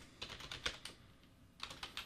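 Typing on a computer keyboard: a quick run of keystrokes, a pause of about half a second, then a few more keystrokes near the end.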